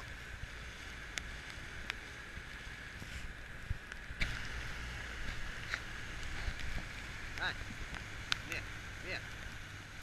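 Wind and water rushing past an inflatable coaching boat under way through a choppy sea, with a low steady hum from its outboard motor underneath and scattered sharp slaps of water against the hull.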